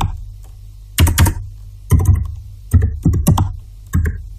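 Computer keyboard typing in short bursts of a few keystrokes each, about five bursts, as a command is typed, over a steady low hum.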